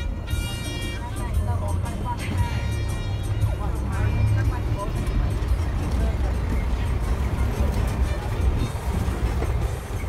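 Steady low engine rumble of a passenger minibus heard from inside its cabin, with music and voices over it.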